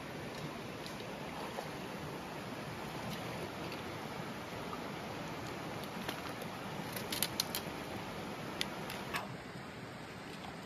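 Shallow, rocky river running over stones, a steady rush of water. A few light clicks come near the end, and the rushing drops quieter about nine seconds in.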